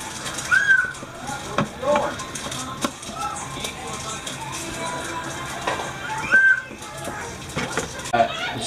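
Wooden spoon scraping and knocking against a metal ice-cream-maker canister as soft homemade ice cream is dug out, with a few short clicks. Two short high-pitched calls stand out, about half a second in and near the end.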